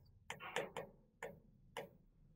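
Faint short scratches of a marker writing on a whiteboard: a handful of quick strokes as a few characters are written.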